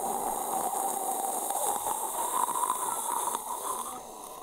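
A long whistled note blown through pursed lips, a single steady tone with breathy hiss. Its pitch creeps slightly upward before it fades out near the end.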